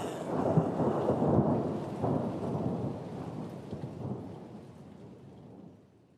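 Rain-like rushing noise with low rumbles, like a storm sound effect, at the end of a song track, fading out steadily to silence.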